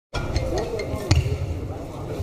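Badminton hall sounds: a few sharp clicks of rackets hitting shuttlecocks and shoes on the court floor, the loudest just over a second in, over a murmur of voices and low thumps.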